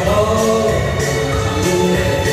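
A Chinese pop song sung live through handheld microphones over backing music with a steady beat.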